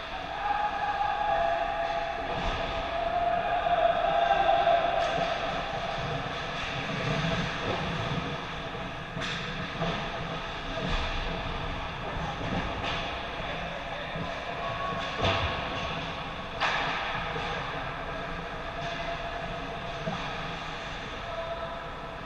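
Ice hockey rink sounds: skates on ice, with a steady background hum and several sharp stick or puck knocks. A long wavering tone sounds over the first few seconds.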